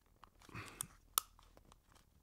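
Small plastic power switch on a Sonru BT1002 Bluetooth transmitter being slid on by hand, giving one sharp click a little over a second in, with a few fainter ticks and the soft rustle of fingers on the plastic case.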